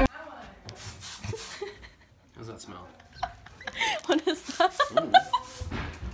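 Indistinct voices and laughter in a small room, quieter in the first half and livelier from a few seconds in.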